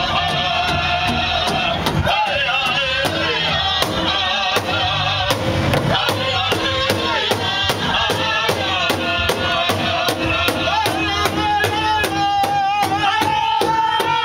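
Native American drum group: several men striking one large shared drum with sticks in a steady, even beat while singing together in high voices.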